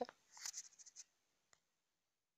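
Near silence: a faint, brief rustle over the first second and one small click about one and a half seconds in.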